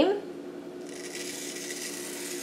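Aerosol can of whipped cream spraying into a mug: a steady hiss of escaping gas and cream that starts just under a second in.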